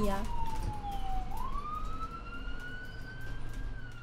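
Emergency-vehicle siren sound effect in a slow wail: a single tone falls, rises again over about two seconds, then starts to fall once more.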